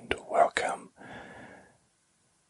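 A man whispering a few words, stopping shortly before the end.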